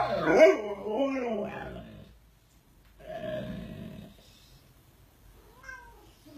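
Cat yowling and growling: a loud, wavering call lasting about two seconds, then a shorter one about a second later, as a husky mouths its tail.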